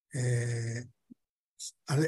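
Speech only: a man's voice holding a drawn-out hesitation vowel like "eh" on one level pitch for most of a second, then words resuming near the end.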